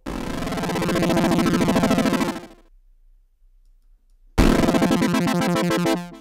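Ableton Drift software synth playing an F-A-C-E chord of detuned saw waves, its filter pulsed rapidly by an LFO whose rate is being pulled down by a decaying envelope, so the wobble slows as the chord sounds. The chord fades out about two and a half seconds in, and after a short gap it is played again with the same fast pulsing.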